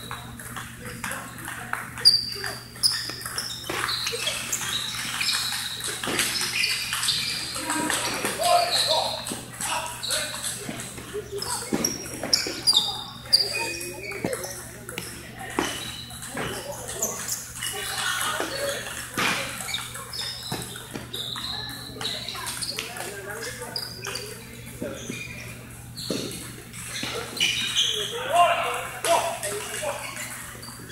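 Table tennis rallies: the ball clicking off paddles and the table in quick exchanges, with many separate knocks throughout, over indistinct voices in a large hall.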